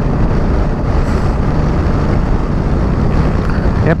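Steady wind rush over the microphone of a motorcycle moving at highway speed, with a deep rumble of engine and road underneath.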